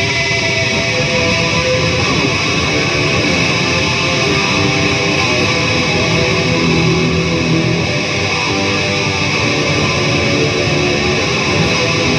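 Oscar Schmidt by Washburn Les Paul-style gold-top electric guitar played through an amplifier, continuous playing without a break.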